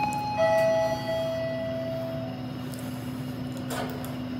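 Toshiba lift's two-note chime: a high note, then a lower note about half a second later, ringing out and fading over about two seconds. A steady low hum runs under it, and there is a short clatter near the end.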